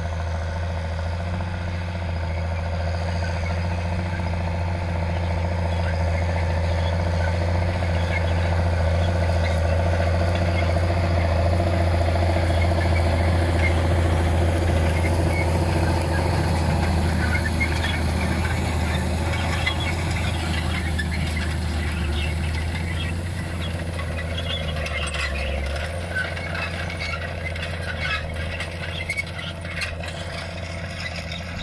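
A John Deere 7820 tractor's diesel engine runs steadily under load while it pulls a Horsch disc cultivator through stubble, growing louder as it passes close. The cultivator's discs and tines rattle and crackle as they work the soil. Near the end the engine note drops and changes.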